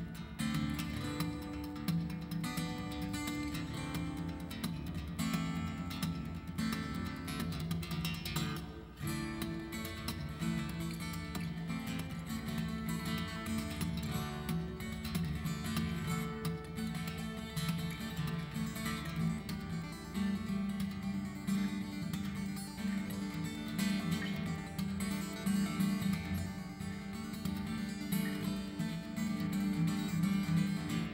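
Solo steel-string acoustic guitar played fingerstyle: a fast, busy instrumental with closely spaced plucked and strummed notes and a strong low register.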